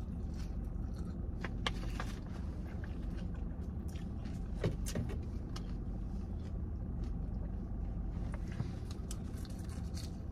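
Steady low hum of a car idling, heard from inside the cabin, with a few small clicks and crunches from eating salad greens with a fork.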